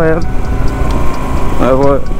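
Low, steady rumble of a motorcycle being ridden: the engine running with wind noise on the rider's camera microphone.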